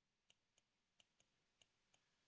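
Near silence with about six faint, sharp clicks spread over two seconds: a stylus tapping and stroking on a touchscreen as digits are handwritten.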